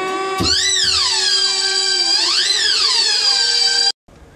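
Theremin playing: an electronic tone slides up into a held note, then a higher tone swoops up and down twice over it. It cuts off abruptly just before the end.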